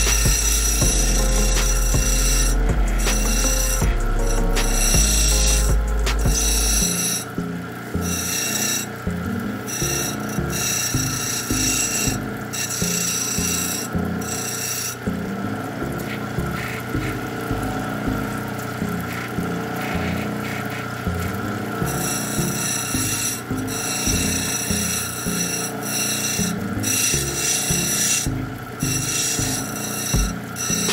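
Opal being ground on the wet wheel of a lapidary cabbing machine: a steady rasping grind over the running machine, its high hiss swelling and fading as the stone is pressed to the wheel and eased off. A deep hum drops away about seven seconds in.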